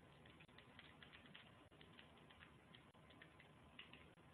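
Faint typing on a computer keyboard: quick, irregular key clicks, several a second.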